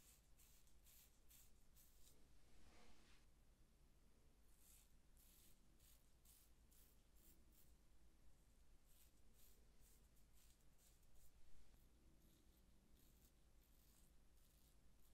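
Faint scraping of a metal safety razor's blade cutting through lathered hair on the scalp, in runs of quick short strokes.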